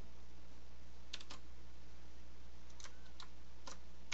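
Scattered keystrokes on a computer keyboard: a quick run of three clicks about a second in, then a few single clicks near the end, over a steady low hum.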